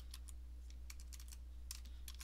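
Keystrokes on a computer keyboard: a quick, uneven run of key taps while code is typed and deleted, over a faint steady electrical hum.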